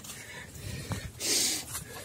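A trail runner breathing hard while climbing a steep muddy slope, with one loud rushing breath about halfway through.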